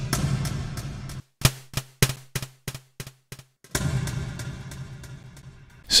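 Synthesized snare hits from an Arturia MicroFreak, run through a transient shaper, delay and convolution reverb, with long decaying reverb tails. In the middle the sound breaks up into crackles and brief dropouts, and a second hit comes about four seconds in. The crackling is caused by the convolution reverb's heavy processing with the audio buffer set too small.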